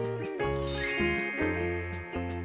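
Bright chiming sound effect that sweeps upward in pitch about half a second in, over steady children's background music with a bass line.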